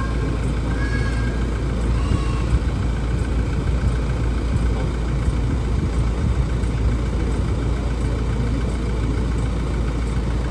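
Toyota Land Cruiser Prado's 2.8-litre diesel engine idling steadily, with a low, even rumble.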